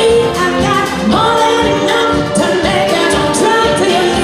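A woman singing live into a handheld microphone, backed by a band with drums and electric guitar.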